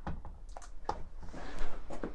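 Handling noise from a hand moving an e-bike battery pack wrapped in blue plastic heat-shrink: a few light taps, and a short rustle of the wrap past the middle.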